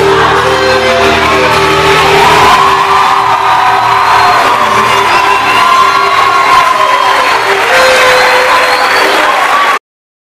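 A live rock band's last sustained chord rings for about two and a half seconds, then gives way to a concert crowd cheering and whooping. The sound cuts off abruptly just before the end.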